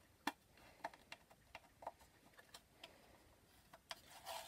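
Faint, irregular light clicks and scratches, about a dozen, from a fingernail picking a price sticker off the bottom of a small craft box.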